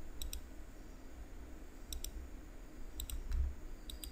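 Computer mouse clicking three times, a second or more apart, each click a quick double tick, over a faint low hum.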